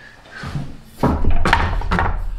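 A long purpleheart board being handled and set down on a stack of wooden strips: wood knocking and rubbing on wood, starting about a second in.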